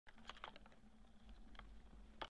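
Near silence with a few faint, sharp clicks, several close together in the first half second and one more past the middle, over a low hum.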